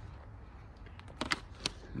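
Faint, steady background noise with a few light clicks in the second half.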